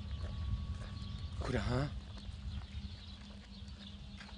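A man's voice, one short utterance about one and a half seconds in, over a steady low hum and rumble.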